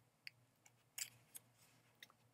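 Faint handling of newsprint journal pages as a page is turned by hand, with a few soft crisp ticks of paper.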